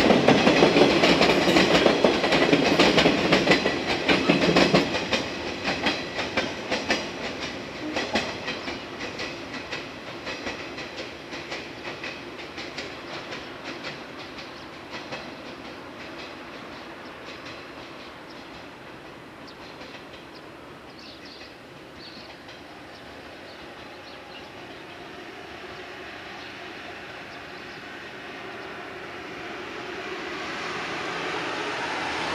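Electric train's wheels clattering rhythmically over the rail joints as it moves away, loud at first and fading steadily over about fifteen seconds until only faint background noise remains.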